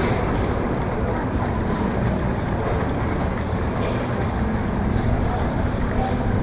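Wind buffeting the microphone: a steady low rumble with a faint hum under it.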